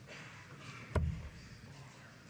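A steel-tipped dart striking a bristle dartboard once, a single short thud about a second in, over low hall ambience.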